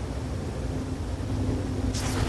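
A low rumble that slowly grows louder, with a faint steady hum over it.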